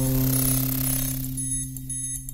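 Logo intro music: a low held note, struck just before, slowly fading, with faint high ticking over it.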